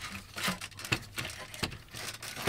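Dash trim panel being pulled out by hand, its retaining clips and plastic giving a series of irregular sharp clicks and knocks, a couple of them louder about a second in and past the middle.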